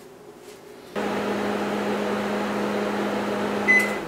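Panasonic inverter microwave oven running on high: a steady hum with a low tone that starts abruptly about a second in. Near the end it gives a short high beep as the cooking cycle finishes, and the hum stops.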